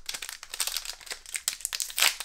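Foil Pokémon booster-pack wrapper crinkling as it is handled in the hands, a dense run of small, irregular crackles.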